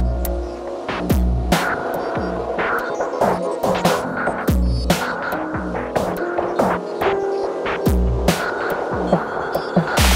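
Electronic music: a syncopated drum pattern from the Microtonic drum synth, with deep kicks and sharp clicks, driven through an Elektron Analog Heat. Under it run layered Waldorf Iridium synth and sampled piano chords.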